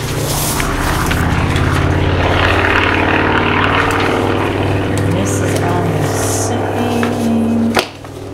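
A steady engine drone with a low hum, holding level for several seconds, then cutting off abruptly with a click near the end.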